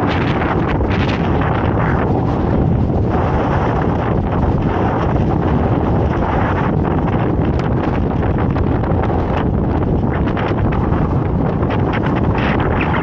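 Strong wind buffeting the camera microphone: a loud, steady low rumble.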